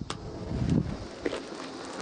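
A lighter is struck with a sharp click. Dry cottonwood fluff then flares up with a brief low rushing surge, followed by a steady hiss of burning and a few small crackles.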